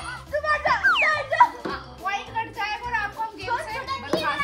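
Children's voices talking and exclaiming over background music with a repeating low bass line.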